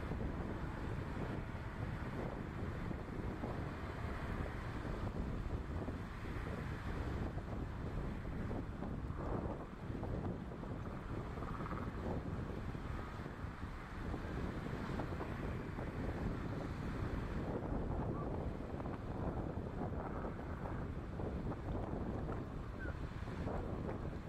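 Wind buffeting the microphone over a steady rush of water, from small sailing boats racing in a strong breeze.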